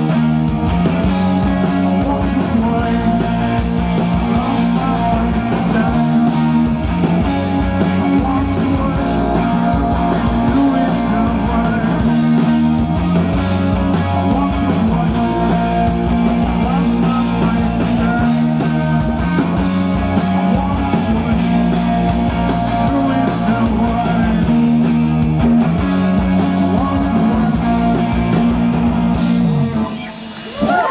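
Live post-punk rock band playing loud through a PA, with electric guitars, drums and singing. The music cuts off suddenly right at the end.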